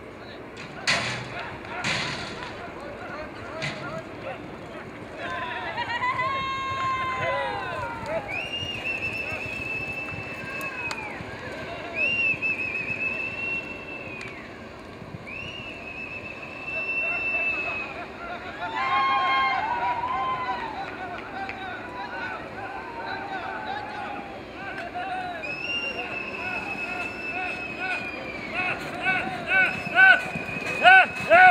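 Men shouting and whistling to work cattle: high yells that rise and fall, and long wavering whistles held two or three seconds each. Two sharp knocks come in the first two seconds.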